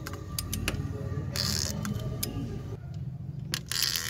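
A 4D56 diesel engine's crankshaft being turned over by hand with a wrench: scattered metallic clicks, with two short rasping bursts about a second and a half in and near the end.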